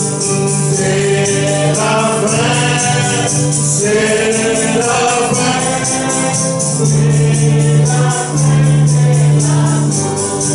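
A congregation singing a gospel song in French in held, drawn-out notes over a sustained bass note, with a steady high percussion beat.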